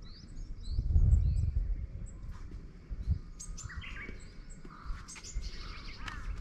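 Small birds chirping in pine woodland: a run of short, high rising notes, then fuller warbling calls in the middle. A low rumble about a second in is the loudest sound.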